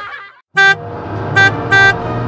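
Three short, loud honks of a horn on one steady pitch: the first about half a second in, then two more close together near the end, over a low musical bed that starts with the first honk.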